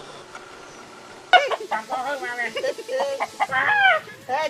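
Chickens squawking and clucking in quick, agitated calls that start suddenly about a second in, with a longer falling call near the end.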